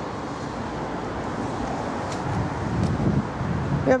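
Steady rushing noise on the camera microphone, with a few faint ticks.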